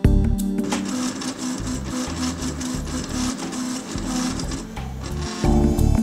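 Desktop FDM 3D printer at work, its stepper motors whirring in short tones that jump in pitch as the print head moves, over background music. The printer sound fades in about a second in and drops away shortly before the end.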